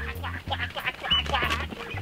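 Ducks quacking in a rapid run of short calls as a person chases them around their pen, over background music with a steady bass beat.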